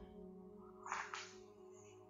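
Quiet: faint steady background music, with one brief soft swish of movement about a second in.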